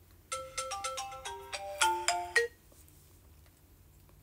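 A short electronic ringtone-style jingle: a quick run of about a dozen clear beeping notes that hop between pitches, lasting about two seconds.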